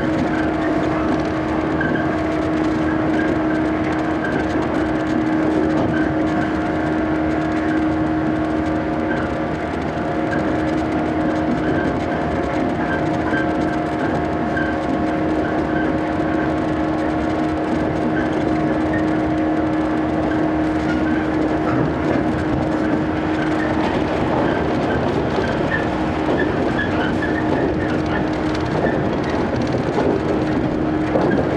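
Shinano Railway 115 series electric train running at steady speed, heard from inside the car: a continuous rumble of wheels on rail under a steady droning whine from the traction motors and gears. The higher note of the whine drops away about two-thirds of the way through.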